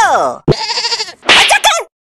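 Cartoon sound effects: a short smack about half a second in, then a wavering, bleat-like cry.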